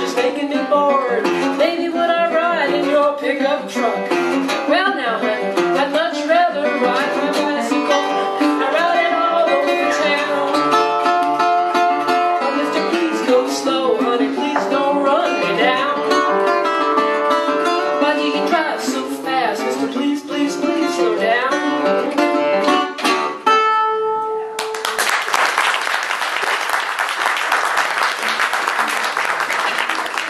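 Steel-bodied resonator guitar played fingerstyle in a blues-ragtime instrumental passage, with bent notes, closing on a held final note about 24 seconds in. Audience applause follows to the end.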